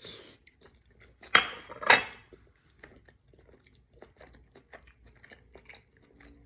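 A person biting into and chewing a steamed dumpling, with small wet mouth clicks. Two louder, harsher noises come about a second and a half and two seconds in.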